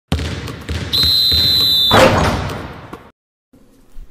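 Intro sound effects: a run of low thuds under noise, a shrill whistle blast held for about a second, then a loud slam at the cutoff that rings out and fades over about a second.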